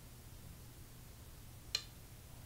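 Faint steady room hum, then a single sharp click near the end: the Go client's stone-placement sound as the opponent's white stone is played on the board.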